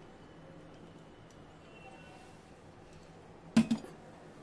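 Quiet kitchen room tone, then two quick knocks of glassware near the end as a glass serving bowl of matar ghugni is taken up.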